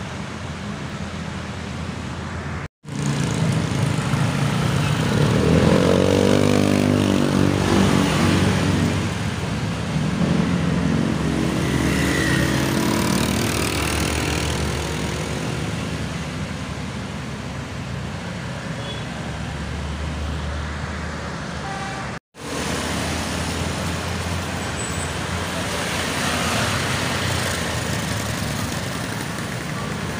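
Road traffic of passing motorbikes and scooters, engines rising in pitch as riders accelerate past, loudest a few seconds in. The sound cuts out briefly twice, about 3 and 22 seconds in.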